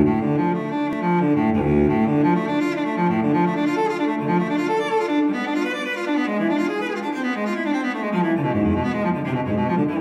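Instrumental background music led by low bowed strings, with a steady run of notes changing about every half second.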